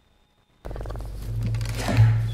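A desk conference microphone switching on about half a second in: a sudden steady low hum with rumbling noise picked up through the open mic, growing louder toward the end.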